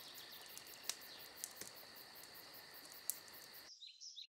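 Faint, steady high-pitched insect chirring in the open air, like crickets, punctuated by a few sharp clicks. It cuts off abruptly just before the end.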